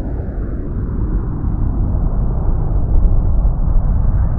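A low, rumbling sound-effect swell that grows steadily louder, the build-up of an animated logo reveal.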